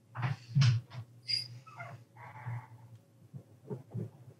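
A man crying, trying to compose himself: a few short choked sounds in the first second, then quieter breaths.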